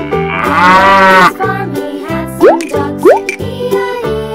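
A cow mooing sound effect, one long wavering call, over cheerful children's background music. It is followed by two short, sharply rising pops.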